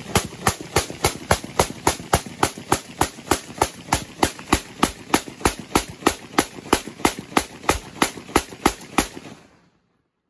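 A firearm firing rapidly and steadily into a river, about three to four shots a second, more than thirty shots in all, stopping about nine seconds in.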